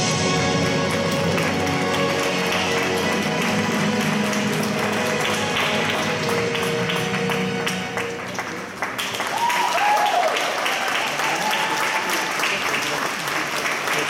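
Figure-skating program music ending on a held note, mixed with rink audience applause that gets louder about nine seconds in. A few voices call out from the crowd during the applause.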